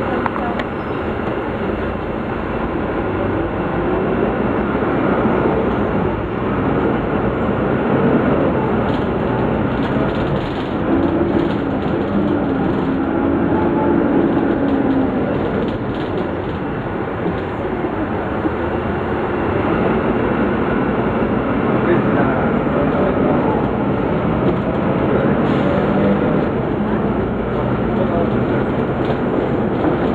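Interior sound of a Volvo B9 Salf city bus on the move: its diesel engine and drivetrain run steadily, the pitch rising and falling as the bus speeds up and slows in traffic, with body rattle and road noise. Passengers talk in the background.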